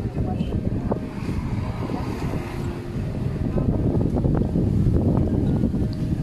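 Wind buffeting the microphone: a steady low rumble that grows louder about halfway through, with faint voices of people in the background.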